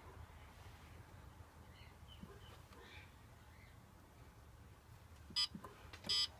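A faint low hum, then one short electronic beep from the Bartlett 3K kiln controller's keypad about five seconds in.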